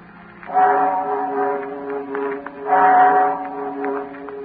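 Sustained organ-like chords of a musical bridge between scenes, swelling up twice.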